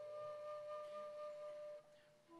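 A solo instrumental melody holding one long steady note. The note stops a little before the end, leaving a brief quiet gap.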